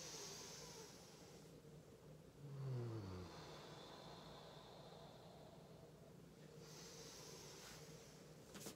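A woman's faint, audible yoga breathing: a soft breath at the start and another near the end, with a short low sigh falling in pitch about two and a half seconds in.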